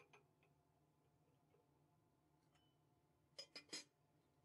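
Near silence, broken by a few faint ticks at the start and three quick sharp clinks near the end as lab glassware is handled.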